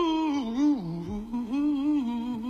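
A man's soul voice humming a wordless ad-lib through nearly closed lips, with a wavering vibrato; the pitch dips about halfway through and then wavers back up.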